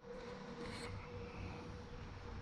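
Faint outdoor background noise with a thin, steady hum.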